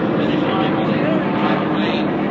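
Steady racetrack din: engines running at a distance mixed with indistinct voices, a constant wash of sound with no breaks.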